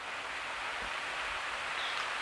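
Steady background hiss with no distinct event: an even noise floor in a pause between spoken sentences.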